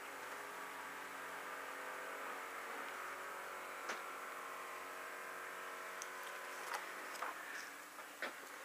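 A faint steady electrical hum of room tone, with a few light clicks and rustles about four seconds in and again near the end.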